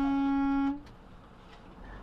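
A single loud, steady horn blast, typical of a semi truck's air horn, cutting off sharply under a second in. It is followed by a low, even road rumble in the truck cab.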